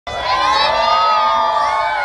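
A crowd of schoolchildren shouting and cheering together, many high voices holding one long drawn-out cheer.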